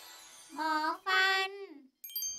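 A high, child-like voice says the Thai word 'หมอฟัน' (dentist) in two drawn-out, sing-song syllables, the second one longer and falling away at the end. At the start the last of a ringing chime fades out.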